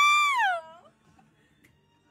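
A single high-pitched, meow-like vocal call that rises, holds briefly and falls away, over within the first second.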